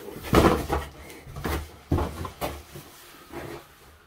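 Cardboard packaging being handled: a run of scrapes, rustles and knocks as an inner cardboard guitar box is pulled up out of its shipping carton, loudest about a third of a second in. A brief exclaimed "oh" comes near the middle.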